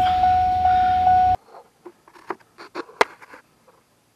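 A steady high electronic tone over a low hum, which cuts off abruptly about a second and a half in. A few light clicks and knocks follow, the sharpest near three seconds.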